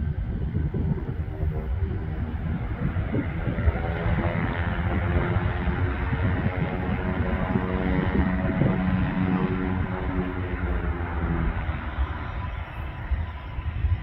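Boeing 737-700's CFM56-7B turbofan engines during the landing rollout: a loud, steady rushing roar with a layered hum of bending tones, swelling in the middle and easing near the end.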